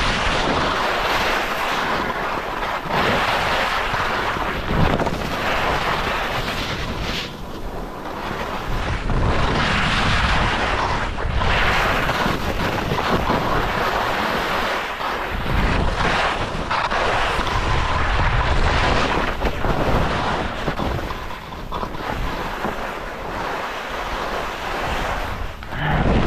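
Wind rushing over a GoPro's microphone during a fast ski descent, over the hiss and scrape of skis on packed snow, swelling and easing every few seconds.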